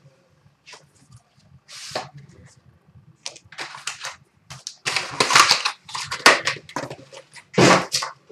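Packaging of a hockey card box being torn open and handled: a series of irregular rips and crinkles of plastic wrap and cardboard, with a louder burst near the end.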